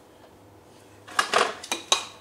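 Several sharp metallic clicks and clinks of a hand tool working a screw out of a power wheelchair's metal seat-frame rail. The clicks start about a second in, after a quiet moment.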